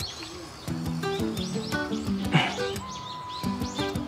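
Background music with short repeated notes over a light beat, with birds chirping through it.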